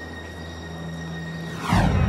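Low, sustained suspense-score drone with a faint high steady tone. Near the end a loud whoosh transition effect sweeps in.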